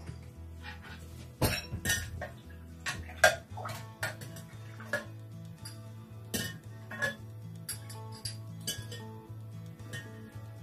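A metal spoon clinking against a glass jug in a string of light, irregular clinks as it is dipped and stirred. Soft background music with a steady low beat runs underneath.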